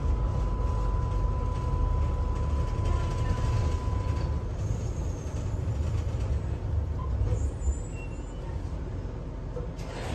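Tram running, heard from inside the passenger cabin: a steady low rumble throughout, with a thin steady whine over it for about the first four seconds.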